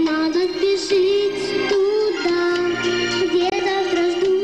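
A young female voice singing a song over a backing track, holding long notes with a slight waver.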